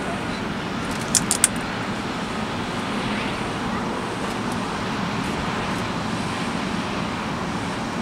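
Airbus A321's twin turbofan engines running as the jet rolls along the runway: a steady, even noise. A few short clicks come about a second in.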